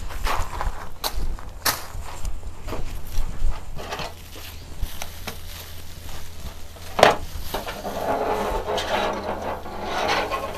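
Dried statice bunches rustling and crackling as they are handled and pushed into place on a wire wreath, with scattered sharp clicks, the loudest about seven seconds in.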